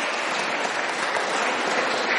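Audience applauding steadily, a dense even clapping.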